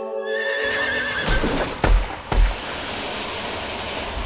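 A horse whinnying in one falling, wavering call, followed by three heavy thuds over a steady rushing noise.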